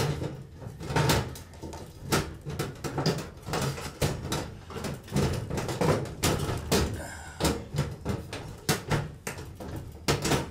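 Metal ballast cover of a fluorescent ceiling fixture being pushed back up into place. It knocks, clatters and scrapes against the fixture housing in a run of sharp clicks as it is worked into its clips.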